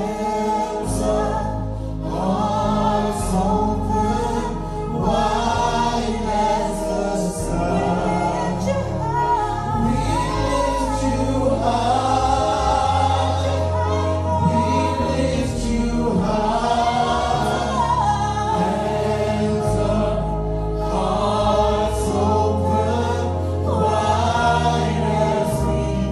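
A gospel worship song sung by a group of voices in harmony, with the words "hands up, hearts open, wide as the sky" and "we lift you high", over sustained low bass notes.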